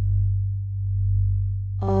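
Low, steady electronic hum of pure sine tones, swelling and fading about once a second.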